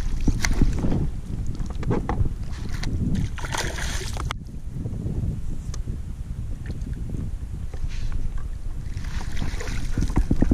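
Water splashing as a hooked sheepshead thrashes at the surface and a landing net is dipped in and lifted out with the fish, over steady wind rumble on the microphone. The splashing comes in two louder spells, a few seconds in and near the end.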